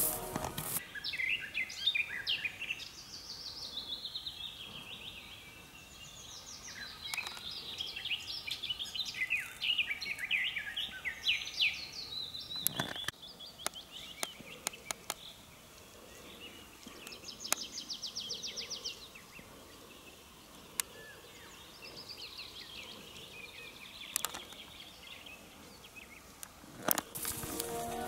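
Several songbirds singing: repeated short chirping phrases and a fast trill, with a single sharp knock about halfway through.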